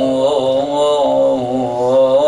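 A man's voice chanting an Arabic salutation to Imam Husayn, holding one long vowel that winds up and down in pitch without a break.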